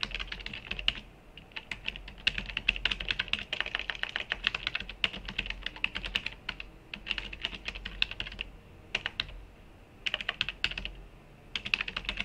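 Typing on a computer keyboard: quick runs of keystrokes in bursts, broken by short pauses.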